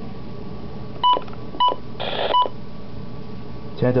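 Midland WR-100B weather radio giving three short key beeps, about half a second apart, with a brief burst of hiss between the second and the third.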